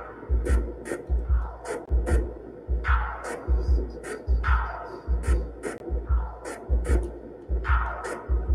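Electronic music from a Eurorack modular synthesizer sequenced by a monome Teletype. A deep bass pulse comes about every 0.8 seconds, with sharp, hissy hits and falling mid-range tones between the pulses.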